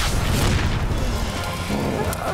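Cartoon blast sound effect: a deep boom with a rushing noise near the start that dies away over about a second, with music underneath.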